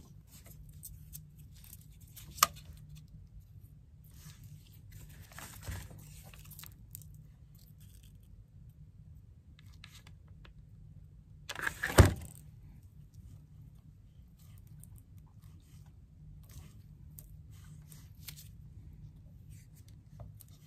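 Quiet handling noises from crafting: small wooden pieces and twine being rustled and scraped on a cardboard work surface. There is a sharp click about two seconds in and a louder knock about twelve seconds in.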